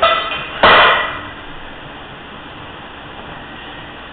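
One loud thump about half a second in, as a lifter drops onto a wooden-board bench under a loaded barbell; it fades within half a second into steady room noise with a faint high hum.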